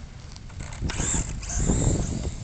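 HSP Grampus RC buggy's 3300kv brushless motor on 3S whining at high pitch as it accelerates away, with a low rumble of its tires over dirt and grass that is loudest near the end.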